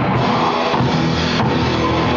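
Live rock band playing at a steady high level: drum kit with bass drum and cymbals under electric guitars and bass guitar.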